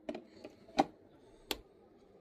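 Three short, sharp plastic clicks about 0.7 s apart as a hair dryer and its plug are handled at a wall socket; the dryer is not running yet.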